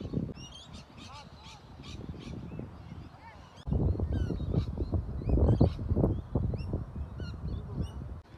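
Birds chirping repeatedly in short, quick calls. A muffled low rumble underneath gets suddenly louder about halfway through.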